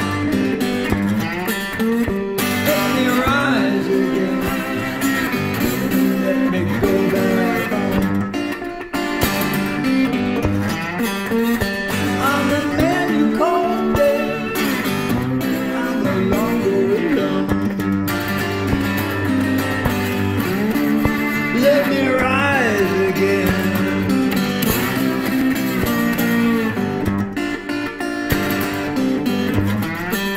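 Hollow-body electric guitar playing an instrumental break: picked melody notes, several of them bent up in pitch, over sustained lower notes.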